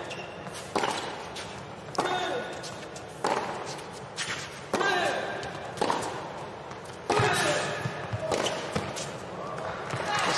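Tennis rally on an indoor hard court: a ball struck by rackets back and forth about every second and a quarter, about seven hits, the hardest about seven seconds in.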